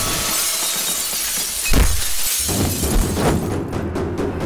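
A large pane of glass shattering, the pieces showering down for over a second, followed by a heavy impact thud a little under two seconds in.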